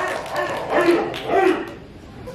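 Two short barking calls from a person's voice, the second about half a second after the first, over crowd chatter. They are the 'woof' bark call that Omega Psi Phi members give.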